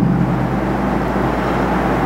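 Steady background noise: an even hiss with a low hum underneath, no distinct events.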